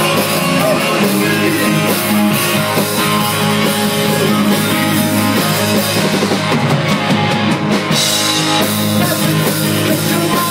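Live rock band playing loud: Telecaster-style and Les Paul-style electric guitars, electric bass and a drum kit.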